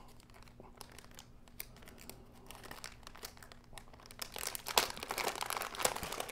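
A thin plastic packaging bag crinkling as it is pulled open and handled. There are faint scattered rustles at first, then louder, busier crinkling over the last second and a half.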